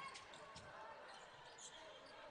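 Faint basketball dribbling on a hardwood court: a few soft bounces over a quiet arena background.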